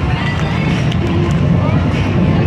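Busy fairground ambience: a steady low rumble with background music and distant voices.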